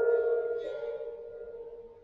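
A small hand-held gong ringing on after being struck. Several steady overtones hum together and fade away over about two seconds.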